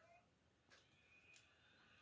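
Near silence with two faint snips about half a second apart, from small scissors cutting through a yarn string.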